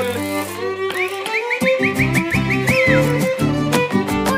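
Instrumental break in a Mexican folk song: a violin plays a run of about eight quick upward slides over strummed guitars.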